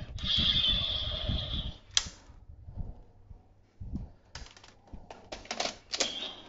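Toy sword of a DX Swordriver Kamen Rider Saber set: a hissing electronic sound effect from its speaker for nearly two seconds, cut off by a sharp click. After a short lull comes a quick run of hard plastic clicks as the sword is slotted into the Swordriver belt buckle.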